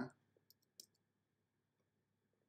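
Three faint clicks of a computer mouse, close together about half a second to a second in; otherwise near silence.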